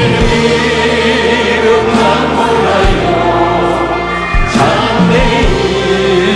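A worship team singing a slow Korean gospel song in harmony, several voices together, over steady instrumental backing.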